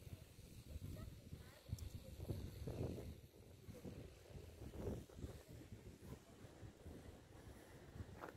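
Wind buffeting the microphone outdoors: a low, uneven rumble that swells a little around three and five seconds in.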